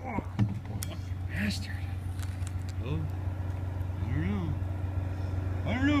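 An engine idling with a steady low hum, most likely the man lift's engine, with a few light knocks in the first second.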